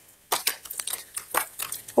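Rustling and crinkling handling noise with light clicks, a quick run of short crackles that starts after a brief quiet moment.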